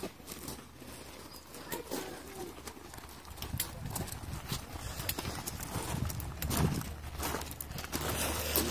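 Footsteps of several people walking on a gravel path, an irregular run of short crunching steps, with voices in the background.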